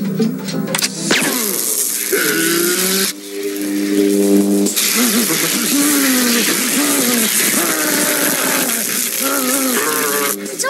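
Film soundtrack of an electrocution: a sustained electrical buzzing and crackling effect over music, with a man's wavering, shaking voice through the second half. The crackle starts about a second in and drops back briefly in the middle while held musical tones come through.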